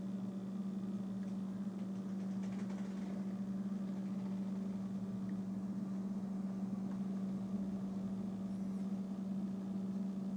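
Steady low hum of room tone, unchanging throughout.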